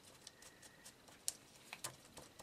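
Glue pen tip dabbing glue onto thin die-cut paper letters: a few faint, short taps and ticks, the clearest about a second in and two close together near the end.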